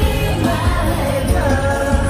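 A K-pop girl group sings live into microphones over a backing band with a steady pulsing beat. It is heard loud from within the arena crowd.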